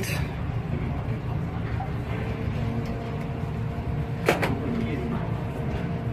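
Steady low background hum with one sharp plastic click a little over four seconds in, as a plastic extraction column is pushed onto a fitting of the vacuum manifold block.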